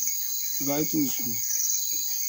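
Crickets chirping outdoors at night in a steady, high-pitched pulsing chorus, with a man's voice briefly speaking over it.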